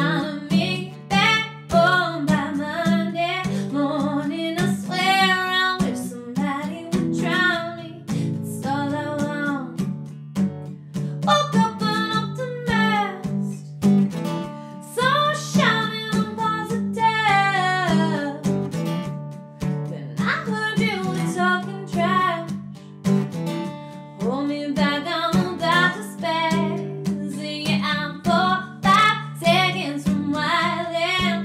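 A woman singing lead vocals over her own strummed acoustic guitar.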